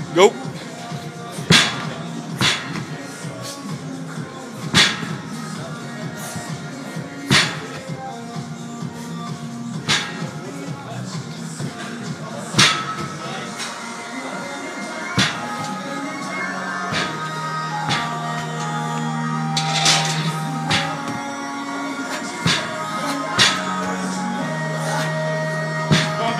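Background music playing throughout, cut by sharp metallic clanks every two to three seconds as hex dumbbells are knocked and set down on the rubber gym floor during fast man maker reps.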